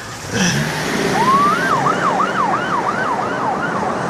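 Emergency vehicle siren: about a second in it rises in one wail, then switches to a fast yelp of about three up-and-down sweeps a second, over a low steady hum.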